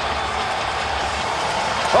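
Ice hockey arena crowd noise, a steady roar of many voices just after a goal.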